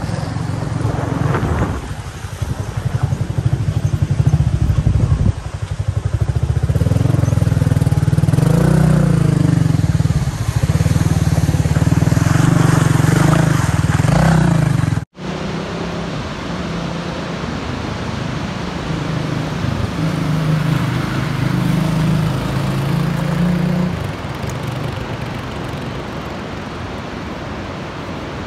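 Motorcycle engine running under load on a rough gravel road, heard from the bike itself, its pitch rising and falling as the rider accelerates and eases off. About halfway through the sound cuts off sharply. Engine sound then resumes at a lower level and fades toward the end.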